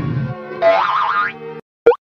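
Cartoon soundtrack: background music fades into a wobbling, rising sound effect of the boing kind. Then the sound cuts out, and a short, quick sweep comes just before the end.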